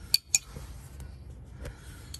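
Metal hand tools clinking together as they are handled in a tool bag: two sharp clinks in quick succession near the start, then faint handling noise.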